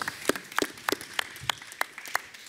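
Light, scattered applause from a small audience: a handful of people clapping irregularly after a talk ends.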